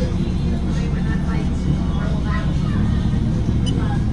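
Car engine idling with a steady low hum, with faint voices over it.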